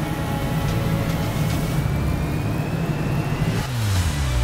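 Sound-design whoosh with a steady low drone under background music, a faint tone slowly rising through it; near the end a falling sweep begins.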